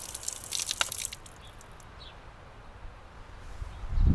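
Water from a B-hyve hose faucet timer splashing onto the ground with some dripping. The flow dies away about a second in as the timer's valve closes.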